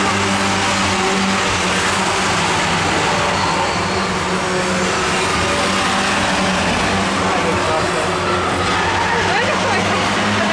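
A pack of Ministox stock cars racing around the oval, their small engines running together in a steady drone, with engine pitch sliding up and down late on as drivers lift off and accelerate.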